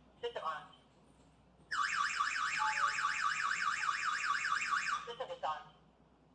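A PG106 security alarm host's built-in siren wails in fast repeated rising sweeps, about five a second, for roughly three seconds and then cuts off. It is an emergency alarm triggered from the phone app, then silenced by disarming. Short rising chirps from the unit come just before the siren starts and again just after it stops.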